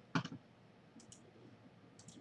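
A few faint computer mouse clicks, two of them close together about a second in, over quiet room tone.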